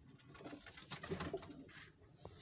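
Teddy-breed domestic pigeons cooing low in a small loft, loudest around the middle, with a few sharp clicks and a brief rustle near the end.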